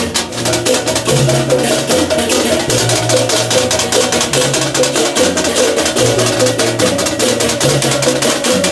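Balinese processional gamelan playing loud, fast music: a dense rapid clatter of cymbals over ringing hand-struck gong notes, with deep low gong tones changing every second or so.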